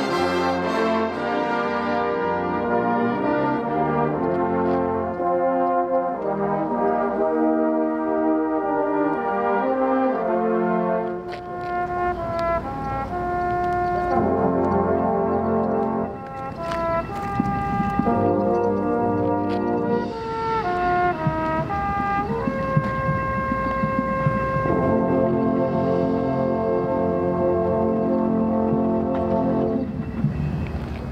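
A brass ensemble playing slow, sustained chords that change every second or so, with brief breaks about eleven and sixteen seconds in.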